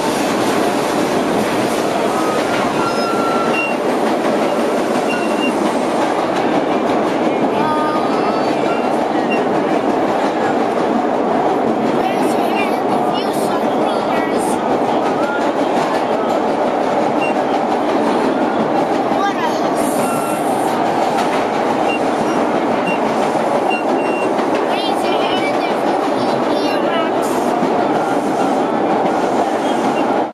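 Vintage R1/R9-era subway train running through a tunnel, heard from inside the lead car: a loud steady running noise. Scattered short high squeaks come from the hand grab being held.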